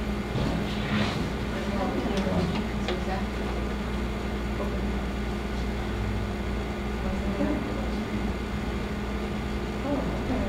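Steady low room hum, with faint murmured voices in the background and a few light rustles of paper being handled in the first few seconds.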